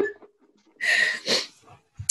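A woman's breathy laughter: two short puffs of air through the nose and mouth about a second in, with a fainter one just before the end.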